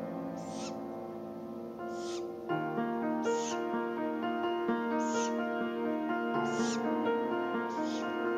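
Background music of sustained, slowly changing notes, with a short, high, rasping call repeated about every one to two seconds: a great grey owl chick begging.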